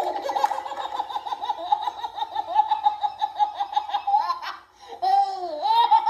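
High-pitched laughter in rapid repeated bursts, with a brief pause shortly before the end before the laughing resumes.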